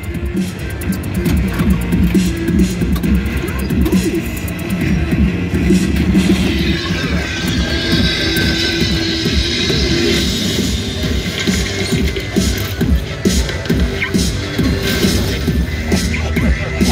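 Prototype Hot Wheels pinball machine playing its game music and sound effects during play, with scattered sharp clicks.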